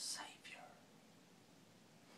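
A man's brief whisper in the first half-second, then near silence: room tone.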